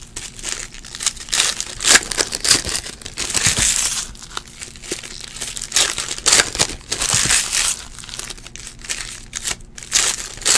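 Foil trading-card pack wrappers being torn open and crumpled by hand, in irregular bursts of crinkling.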